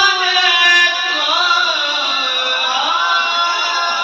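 A man's voice singing a naat through a handheld microphone: a long held note ends about a second in, then ornamented phrases that bend up and down in pitch.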